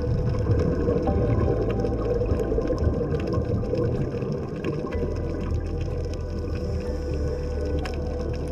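Ambient background music with long held low bass notes and sustained tones, the bass changing about five seconds in, with a faint crackle of clicks over it.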